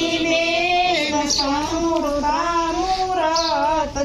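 High women's voices singing a traditional Gujarati ceremonial song, with long, wavering, drawn-out notes and a brief break near the end.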